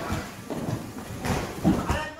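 Irregular thuds and scuffs of feet and a football on a wooden floor as human table football players shuffle along their bars, with short shouts near the end.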